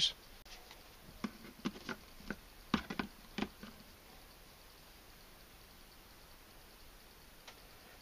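Plastic clicks and knocks of NP-F camera batteries being set into a four-bay desktop charger and pressed down onto its contacts: a run of light taps over the first three seconds or so.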